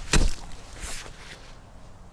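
A pickaxe striking hard, compacted garden soil: one sharp thud just after the start and a softer second strike about a second in.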